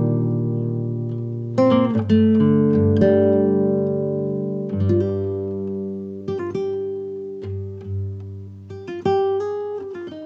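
Slow guitar music: plucked notes and chords struck every second or two, each left to ring and fade away.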